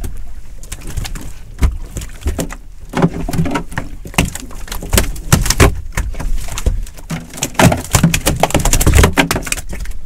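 A large conger eel thrashing on the deck of a small boat: repeated irregular knocks and slaps, thickest in the second half, with short low grunt-like sounds between them.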